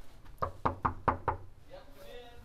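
Knuckles knocking on a wooden door: five quick knocks in about a second.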